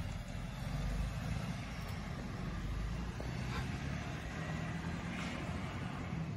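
A vehicle engine running at idle, a steady low rumble.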